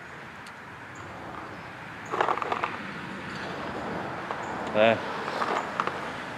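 Steady outdoor background hiss with a brief scuffling noise about two seconds in, then a hesitant spoken "uh" near the end.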